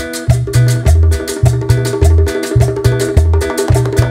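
Live Latin dance band playing an instrumental passage: a repeating bass line under a fast, steady percussion beat, with sustained melody notes from the stage instruments.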